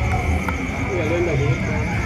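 Indistinct voices of people talking over a steady low background rumble and hum, with a short wavering voice-like sound a little over a second in.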